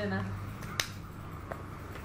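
A sharp click a little under a second in, then a fainter one: a lipstick's cap clicking shut onto its tube.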